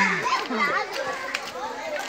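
A group of children talking and calling out over one another, several high voices overlapping.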